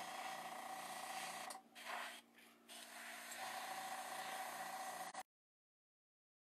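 Airbrush spraying paint at low air pressure: a steady faint hiss over a steady hum, broken twice briefly in the first three seconds as the air stops and starts again. The sound cuts out entirely just after five seconds in.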